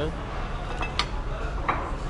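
Ceramic plates and small serving bowls being set down on a table, with a few sharp clinks over steady low background noise.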